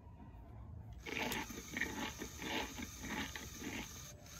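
LEGO WeDo alligator model running its motion-triggered program: the small motor drives the jaw shut and the laptop plays the program's sound effect, heard as a run of short crunching bursts about three a second, starting about a second in.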